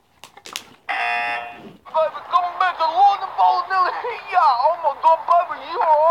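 A game-show elimination buzzer sounds once, a steady tone lasting just under a second, marking a contestant out for laughing.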